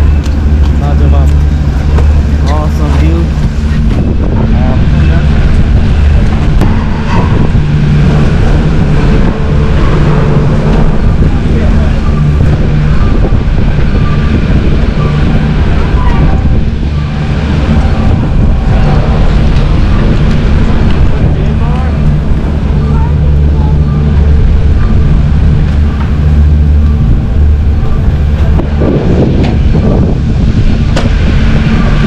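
Steady low machine rumble with people talking faintly behind it.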